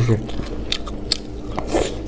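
A person biting and chewing a mouthful of tofu-skin strips with raw onion: a few separate crunching bites, the loudest near the end.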